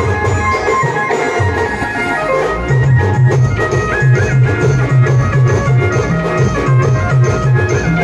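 A live band playing an instrumental: an electronic keyboard carries the melody over stick-played drums. A heavier, steady bass beat comes in about three seconds in.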